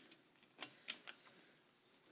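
A tape measure being handled on a rough-cut wooden plank: three faint, short clicks about a second in, over quiet room tone.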